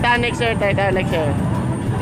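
People shouting and chanting aboard a moving motorboat, over the steady low rumble of the boat under way with wind and water rush. The voices drop away about two-thirds of the way through, leaving the rumble and rush.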